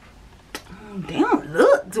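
A woman's voice making short sounds that swoop up and down in pitch, starting about half a second in after a sharp click; before that, quiet room tone.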